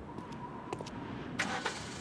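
A car's engine being started, with a short louder burst about one and a half seconds in.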